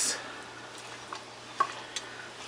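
A wooden spoon stirring chicken thighs in soy-sauce liquid in a pot, with soft knocks of the spoon against the pot about a second in and near the end.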